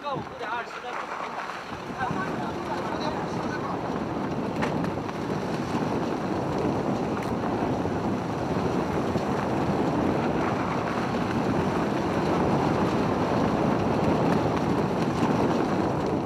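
Steady rushing of wind and road noise from a moving car, heard from beside its side window; it comes in about two seconds in and grows slightly louder.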